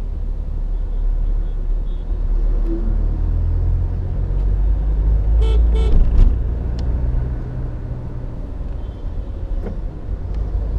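Low, steady engine and road rumble heard from inside a moving vehicle. About halfway through come two quick horn beeps in succession.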